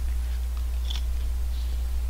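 A person chewing a spoonful of curry and rice, with faint mouth sounds and a small click about a second in. A steady low hum runs underneath throughout.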